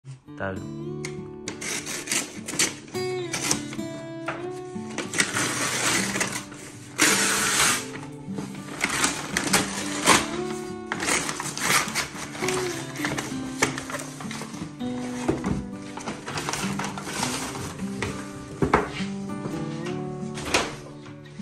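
Background music playing throughout, over bursts of paper crinkling and tearing as a kraft-paper shipping bag is cut and ripped open. The loudest tearing comes about seven seconds in.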